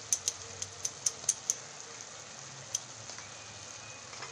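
Thick palak paneer gravy simmering in a pan, bubbles bursting with sharp pops, several in quick succession in the first second and a half and one more near the end, over a faint steady hiss.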